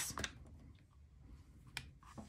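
Faint handling of a small clear acrylic fountain pen as its cap is posted onto the threaded barrel end, with a few light plastic clicks and a sharper click near the end.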